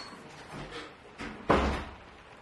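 A single heavy thud about one and a half seconds in, dying away quickly, after a couple of fainter knocks.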